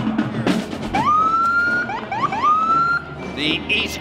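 A few drum hits from a marching drum line, then a fire engine's siren. It climbs into a held wail, gives a few quick rising whoops, and climbs into a second held wail.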